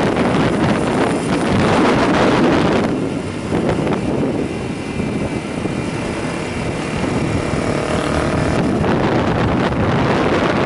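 Wind buffeting the microphone of a moving motorcycle, with its engine running underneath. About three seconds in the wind rush eases and the engine's steady hum comes through more clearly; near the end the wind rises again.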